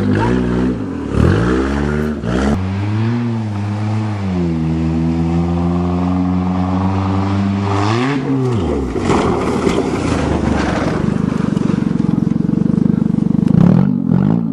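1992 Toyota Corolla's four-cylinder engine revving up through the gears on a run at a dirt jump, then holding a steady high pitch. About eight seconds in, the revs fall away sharply and a rough rushing, rattling noise follows for several seconds. The engine picks up again near the end.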